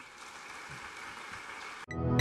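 Audience applauding: a steady patter of many hands clapping, growing slightly louder, then cut off abruptly near the end.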